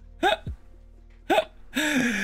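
A man laughing: two short laughs about a second apart, each falling in pitch, then a breathy burst near the end. Quiet background music plays underneath.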